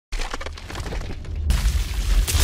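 Logo-intro sound effect of concrete breaking apart: scattered crackling debris over a deep rumble, growing into a louder crash about one and a half seconds in.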